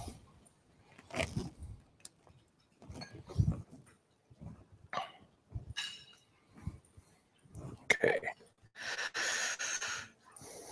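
Faint, scattered knocks, rustles and breaths picked up by a podium microphone while equipment is being hooked up, ending in a short hiss near the end.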